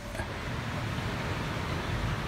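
Steady rushing hum of a house air conditioner running as power comes back on after the main breaker is switched on.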